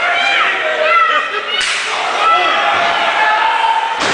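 Ringside spectators shouting during a wrestling match, with a sudden loud slam about a second and a half in as a body hits the ring.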